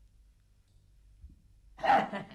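A quiet pause with only a low hum, then near the end a sudden loud, breathy vocal outburst from an actor, like a heavy sigh or gasp.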